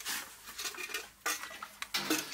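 Metal ladle clattering and scraping against a large steel cooking pot as hot food is ladled out, several sharp clinks, most of them in the second half.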